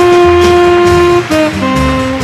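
Tenor saxophone holding one long note for about a second, then stepping down through a falling phrase. Upright bass and drum cymbals keep time underneath in a live hard-bop jazz quintet.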